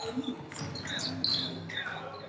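Indoor basketball game on a hardwood gym floor: sneakers squeak in short, high chirps and a basketball is dribbled, its bounces making sharp knocks.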